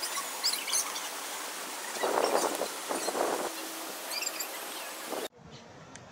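Small birds chirping over a steady outdoor hiss, with two short, rough bursts of noise about two and three seconds in; the sound cuts off abruptly near the end.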